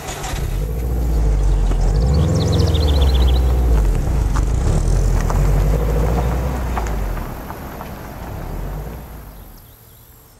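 Subaru Impreza WRX's flat-four engine running as the car pulls off the shoulder and drives away: a low rumble that builds over the first second, holds loud for several seconds, then fades.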